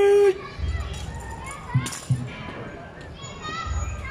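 Street crowd of spectators talking, children's voices among them. A loud steady tone cuts off just after the start, and two sharp knocks come about two seconds in.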